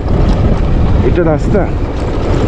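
Motorcycle riding over a rough gravel road, heard on the rider's camera microphone: wind buffeting the microphone over a steady low rumble of engine and tyres on loose stones. A brief burst of the rider's voice comes about a second in.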